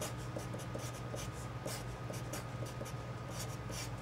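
Felt-tip marker writing on paper: a quick run of short strokes as letters and brackets are drawn.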